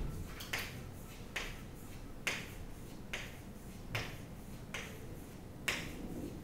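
Chalk drawing on a chalkboard: a run of short, sharp tapping strokes, about one a second.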